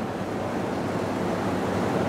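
A steady, even hiss of background noise with no distinct events: the recording's noise floor during a pause in speech.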